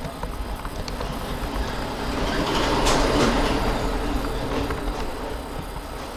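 A passing vehicle, heard as a rushing noise that swells to its loudest about three seconds in and then fades away.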